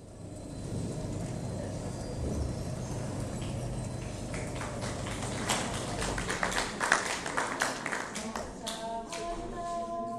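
Indistinct murmur of voices in a hall. In the middle comes a run of sharp taps and knocks. Near the end women's voices begin singing.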